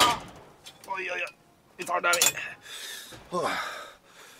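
A man's breathy gasps and short voiced exhales, with a sharp click right at the start.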